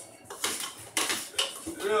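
A utensil knocking and scraping against the inside of a saucepan while mashing potatoes, a few irregular sharp clacks.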